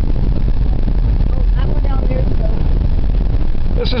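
Steady low rumble of a car's engine and road noise heard from inside the cabin while driving, with faint voices murmuring in the middle.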